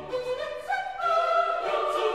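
Mixed chamber choir singing sacred Classical-era polyphony with string accompaniment, the upper voices stepping upward in pitch about half a second and again a second in.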